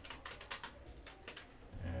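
Computer keyboard keys clicking in a quick, uneven run of keystrokes as code is typed.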